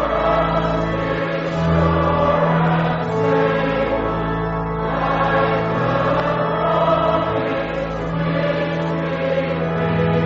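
Group hymn singing in slow, sustained notes, with steady held bass notes of an accompaniment underneath.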